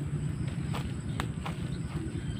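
Footsteps on leaf-littered ground: a few short knocks, most about a second in, over a low steady rumble.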